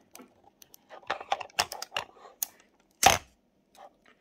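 Small clicks and crackles of fingers handling a white plastic digital desk clock and picking at the protective film on its screen, with one louder sharp snap about three seconds in.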